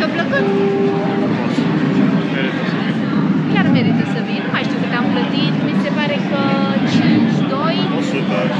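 People talking close by, over the chatter of a crowd.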